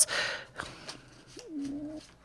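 A woman's soft breathy exhale, then a short, quiet hummed 'mm' near the end.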